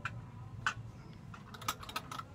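A few light, irregular clicks and taps: one at the start, one about two-thirds of a second in, and a quick cluster near the end, over a low steady hum.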